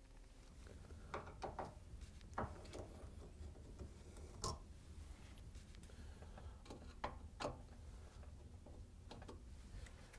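Faint, scattered clicks and ticks of a Phillips screwdriver working the screws that fasten a dishwasher's mounting brackets to the countertop, with a sharper click near the middle.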